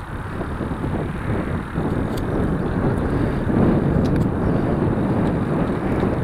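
Wind buffeting the microphone of a moving action camera, a dense low rumble that grows louder over the first few seconds, with a few faint clicks.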